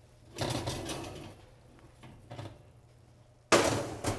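A cast iron skillet scraped off a wall oven's metal rack, a couple of light knocks, then the oven door shut with a sudden loud bang near the end: a little racket.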